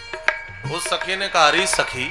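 A man singing a devotional line with long held notes over a sustained steady-toned accompaniment, punctuated by sharp hand-percussion strikes.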